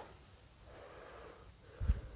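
A person breathing out heavily, a long wheezy breath, followed near the end by a low thump.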